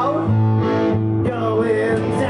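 Live rock band playing through a club PA: amplified guitars hold sustained chords that change about a quarter second in and again near the middle, with a male singer's voice over them.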